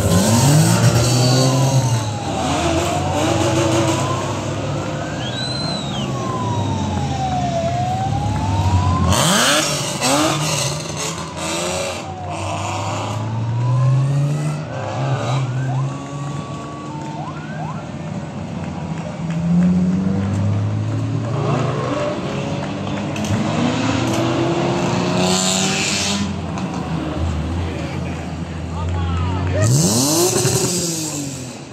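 Rally cars driving down through a hairpin one after another, their engines revving up and dropping back as each takes the bend, with louder passes about nine seconds in and again near the end. A siren wails up and down, about once every five seconds, through the first half.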